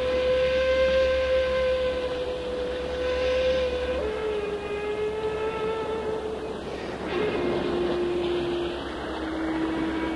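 Shakuhachi (Japanese end-blown bamboo flute) playing slow, long held notes, about four in all, each lower than the one before.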